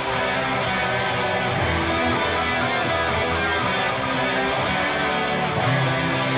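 Heavy metal band playing an instrumental passage led by electric guitars, with held low notes under it and no vocals.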